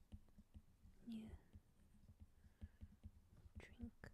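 Very quiet whispered words, one about a second in and another near the end, over faint scattered ticks of a stylus tip tapping and sliding on a tablet's glass screen during handwriting.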